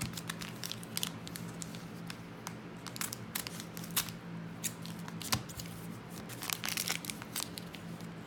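Foil trading-card pack wrappers crinkling as they are handled and cut open with scissors: a scattering of short, sharp crackles and snips.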